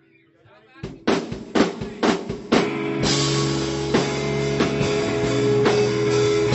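Live rock band starting a song: a run of separate drum hits about a second in, then electric guitar, bass and drum kit come in together about three seconds in and play on loudly.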